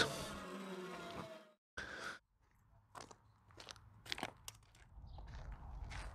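Faint footsteps crunching on gravel: a handful of separate steps, with a low rumble coming in near the end.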